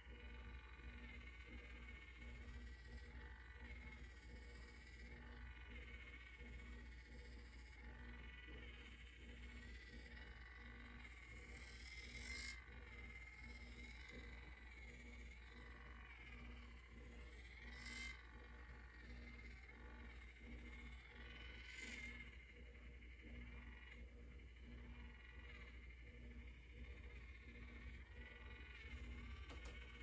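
Faint, steady hum of a battery-powered rotating facial cleansing brush working over skin, with a few brief louder rustles.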